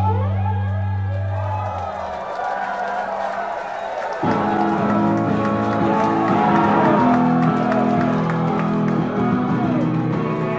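Live rock band with electric guitar and bass, recorded from the audience. Guitar notes bend and glide in arcs over a held low tone that fades out. About four seconds in, the bass and full chords come back in and the music gets louder.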